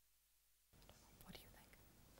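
Near silence, then just under a second in, faint room tone with soft, indistinct whispering.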